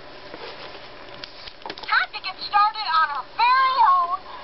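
A talking Toy Story Jessie doll speaking a recorded phrase through its small built-in speaker, set off by pressing her chest: a few clicks, then an animated, high-pitched voice about two seconds in.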